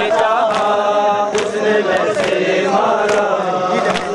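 Crowd of male mourners chanting a noha in unison, with sharp chest-beating (matam) strikes landing in a steady rhythm a little under once a second.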